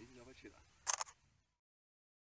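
A camera shutter firing once about a second in, a short double click.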